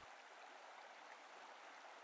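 Near silence, with only a faint, even hiss.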